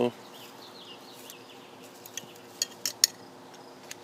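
A few sharp clicks and clinks from a glass jar being handled, four in about a second near the end, the last the loudest.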